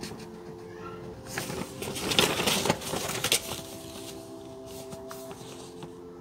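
A sheet of paper rustling and crinkling in the hands for about two seconds in the middle, the loudest sound, over soft sustained ambient synth chords that drop away and return with a new chord.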